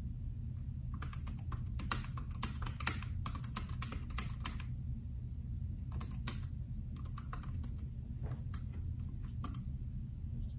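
Typing on a Bluetooth keyboard: a quick run of key clicks for several seconds, a short pause, then a few more scattered keystrokes near the end. A low, steady hum sits underneath.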